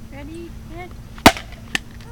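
A hammer strikes a hard plastic toy figure with one sharp, loud crack about a second in, followed by a second, fainter knock about half a second later.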